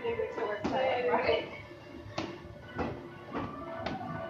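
Boxing gloves striking held pads: about five sharp slaps spaced roughly half a second to a second and a half apart, over background voices.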